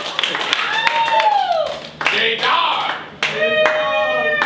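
Scattered hand-clapping from a small audience, with voices calling and talking over it; the clapping thins out about halfway through and picks up briefly again near the end.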